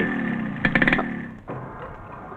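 A motor engine sound that falls in pitch and fades away over about a second and a half, with a quick run of clicks in the middle.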